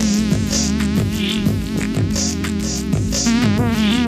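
Electronic dance music from a DJ mix: a buzzing synthesizer line whose pitch wobbles rapidly up and down, over a steady low bass note and a regular beat.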